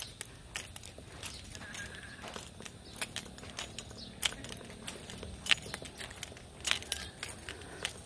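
Irregular light clicks and clinks, some sharper than others, over a faint steady outdoor background.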